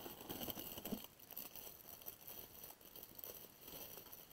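Faint handling noise: light rustles and small knocks as items are picked up and moved about, over a steady faint hiss.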